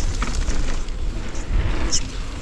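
Wind rushing over the microphone while a Rocky Mountain Maiden downhill mountain bike rolls fast over a dirt trail, its knobby tyres on the dirt, with light clicks and rattles from the bike.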